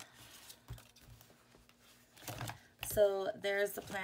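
Soft handling of a ring-binder planner: paper pages and dividers being turned, with a few light clicks. About three seconds in, a woman starts speaking.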